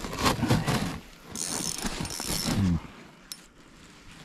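Spinning reel clicking and whirring as line is wound in or taken by a hooked fish, with short grunt-like voice sounds in between.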